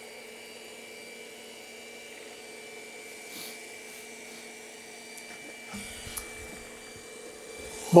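iRobot Roomba Combo j7+ robot vacuum running, a steady hum with a thin whine, with a faint low rumble and a couple of light knocks about six seconds in.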